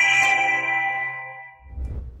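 A bell-like chime chord from an intro logo sting, ringing and fading away over about a second and a half, followed near the end by a short low rumble.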